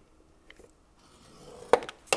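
Bone folder drawn along the groove of a paper scoring board, scoring light cardstock: a faint scrape building over the second half, ended by one sharp tap near the end.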